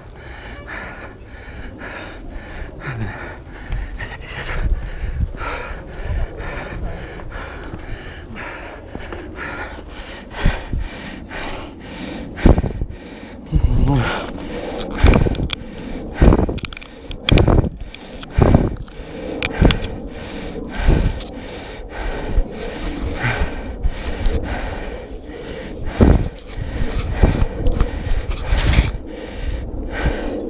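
A mountain biker breathing hard while the bike rattles and jolts over a rough sandy trail, with many irregular sharp knocks from bumps that grow heavier in the second half.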